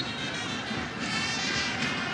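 Football stadium crowd noise with fans' horns and music playing in the stands, steady in level, the horns coming through more clearly about a second in.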